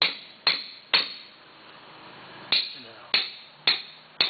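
Caulking mallet striking a caulking iron, driving oakum into a plank seam of a wooden boat hull. The blows come in a steady beat of about two a second, with a pause of about a second and a half between the first three and the next three.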